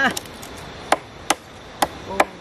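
A few sharp chopping knocks, each short and clean, the main ones about half a second apart.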